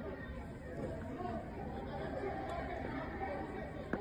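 Faint, indistinct chatter of several voices in the street, heard through a phone recording.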